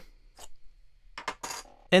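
Handling noise from a digital wind controller being picked up: a few light plastic clicks and rattles.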